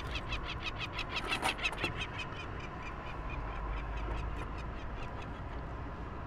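Peregrine falcon chick calling in a rapid run of short, repeated cries, about five a second. The cries are loudest in the first two seconds, then fade and grow sparser.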